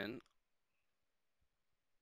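A man's voice finishing a spoken word at the very start, then near silence: room tone.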